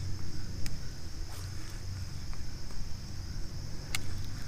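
Steady high-pitched insect chorus with a low rumble underneath and a few faint clicks, the sharpest near the end.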